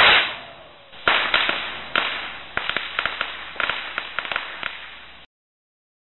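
Title-card sound effect: a loud whoosh falling in pitch, then about a dozen sharp whip-like cracks at irregular spacing, each with a short fading tail and slowly getting quieter, cut off abruptly about five seconds in.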